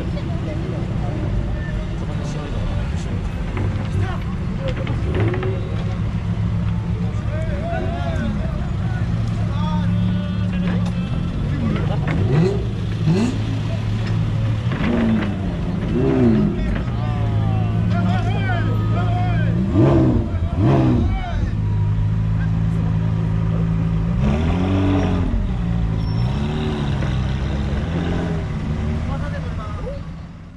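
Car engines running with a steady low drone as vehicles drive out slowly, with voices calling out over it; the sound fades out at the very end.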